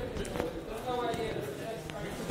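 A lapel microphone being clipped onto a shirt, picking up a few close knocks and rubs from the handling, with faint voices underneath.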